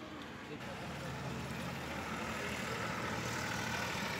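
A road vehicle's engine running close by, growing louder over the first few seconds, with low voices in the background.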